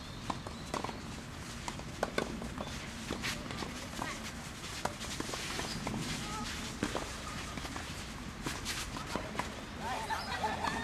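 Tennis rally: rackets striking the ball at irregular intervals, with players' footsteps on the court.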